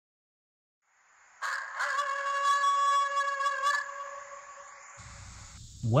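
A single long, steady pitched call or tone of about two and a half seconds, starting suddenly about a second and a half in, over a hiss that fades away afterwards: a sound effect laid under the opening title card.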